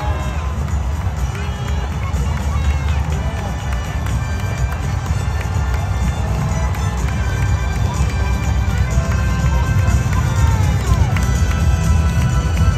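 Music with stadium crowd noise: a dense low rumble of a large crowd, with scattered shouts, growing louder toward the end.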